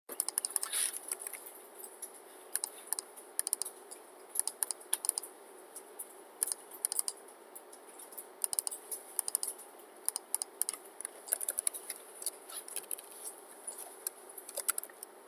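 Computer keyboard typing: quick irregular bursts of key clicks with short pauses between them.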